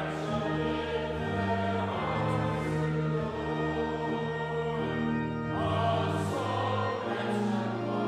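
A congregation singing a hymn, accompanied by a pipe organ playing long held chords over a moving bass line.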